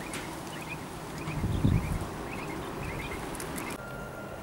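Quail giving soft, high chirps, repeated every so often, with a low bump about one and a half seconds in.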